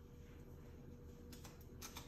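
Near silence, with a few faint light ticks in the second half as sugar is tipped from a paper packet into a glass of iced tea.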